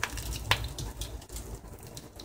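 Wooden spatula knocking twice against a cast-iron skillet in the first half second, over a faint sizzle of dal, curry leaves and dried chilli tempering in hot oil.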